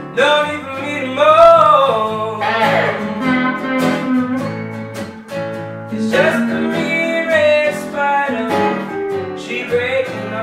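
Acoustic guitar strumming a blues accompaniment while an electric guitar plays lead lines with bent notes.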